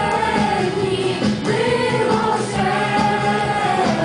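A song sung by a group of voices over instrumental accompaniment, with long held notes.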